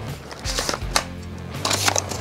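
Soft background music with a few short clicks and rustles of a camera being handled and fitted into a small padded camera bag.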